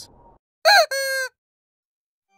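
A comic honking sound effect marking a joke's punchline: two quick honks, a short one that bends in pitch, then a longer steady one.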